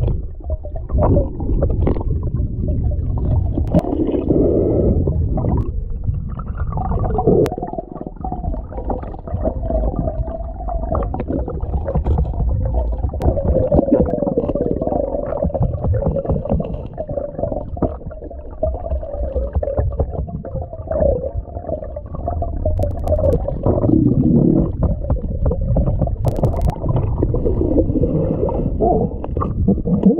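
Underwater rush and rumble of strong creek current flowing past a submerged camera, heard from below the surface, with a few sharp clicks.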